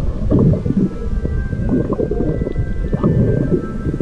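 Underwater sound heard through a camera's waterproof housing: an uneven, muffled low rumble of moving water with small crackles.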